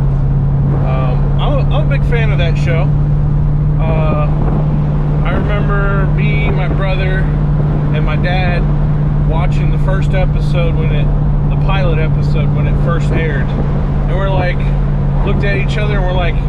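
Steady low drone of a 1967 Chevrolet Caprice's engine and road noise at cruising speed, heard from inside the car's cabin, with a man's voice over it.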